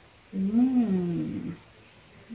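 A woman's wordless hummed vocalisation, like a musing 'hmm' or 'ooh', rising and then falling in pitch for about a second.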